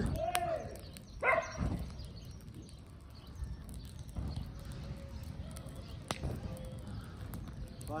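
Dry grass burning, with a low rushing sound and a few isolated sharp crackles. A man's voice is heard briefly in the first two seconds.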